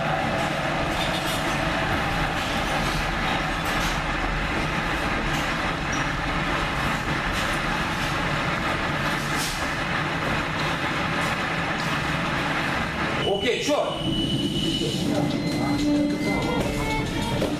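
Loud, dense background noise with indistinct voices. About thirteen seconds in it breaks off abruptly and music with held tones starts.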